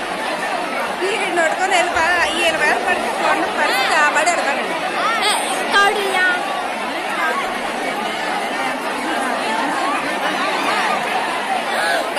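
A large crowd of many voices talking and shouting at once, with louder calls rising above the babble between about one and four seconds in.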